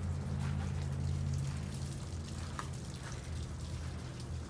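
A steady low machine hum, easing slightly after the first couple of seconds, with faint scattered ticks and patters over it.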